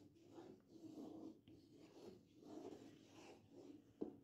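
Faint, uneven scraping and swishing strokes of a wooden spatula stirring milk in a kadai as it is reduced to khoya, still not fully thickened.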